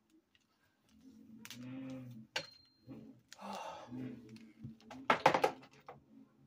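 Clicks and rattles of a handheld curling iron being handled, with one brief high beep about two seconds in and a quick run of louder clicks near the end. A low murmur sounds at times behind them.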